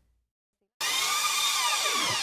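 Digital silence for most of a second, then an electronic sweeping sound effect starts suddenly: a dense hiss with many tones gliding up and down. It leads into a programme's theme music.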